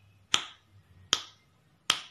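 Three finger snaps, evenly spaced about three-quarters of a second apart.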